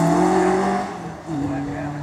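A Peugeot 106's 1600cc engine accelerating hard with its pitch climbing. About a second and a quarter in, a gear change drops the note, and it starts climbing again as the car moves away and the sound fades.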